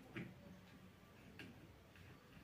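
Faint clicks of a screwdriver working a small part of a power drill: two short ticks over near silence, one just after the start and one about a second later.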